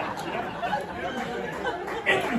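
Many voices of a church congregation talking at once, overlapping and indistinct, with no single voice clear.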